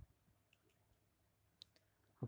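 Near silence: room tone with a few faint clicks, in two small pairs, about half a second in and again near the end.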